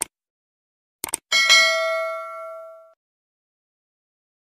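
Subscribe-button animation sound effect: a mouse click, then a quick double click about a second in, followed by a bright notification-bell ding that rings out and fades over about a second and a half.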